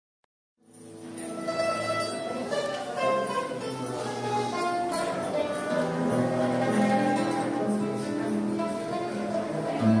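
Mandolin and acoustic guitar playing a Neapolitan tune together, starting about half a second in out of silence.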